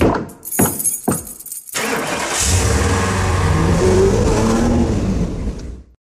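Three sharp knocks, then a motor vehicle's engine starts and runs steadily for about four seconds before cutting off abruptly near the end.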